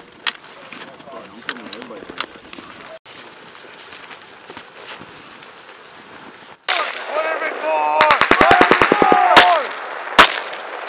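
A burst of automatic rifle fire, about a dozen rapid shots in just over a second, then a single shot, coming in the last third amid men shouting.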